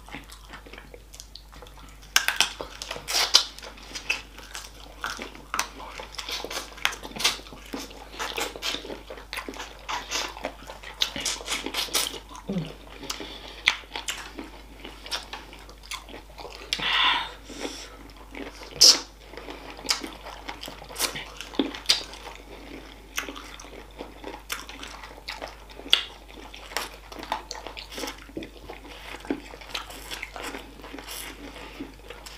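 Close-miked eating of spicy chicken feet by hand: chewing and biting, with many short sharp clicks scattered irregularly throughout.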